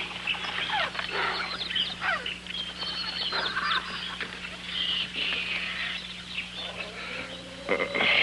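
Jungle background of bird and animal calls: many short whistles and cries that slide up and down in pitch, overlapping, over a steady low hum.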